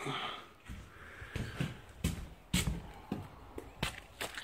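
Footsteps and light knocks, roughly one every half second, the loudest about two and a half seconds in, as someone walks across a wooden floor while handling a phone.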